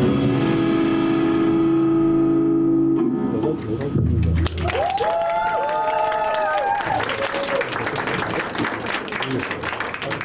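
A rock band's final distorted electric guitar and keyboard chord ringing out, cut off about three seconds in, followed by audience applause with whooping cheers.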